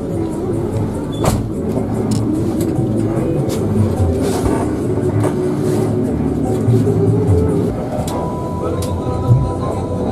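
Music with a voice, over the steady running of a Hino RK8 bus's diesel engine, heard from inside the driver's cab.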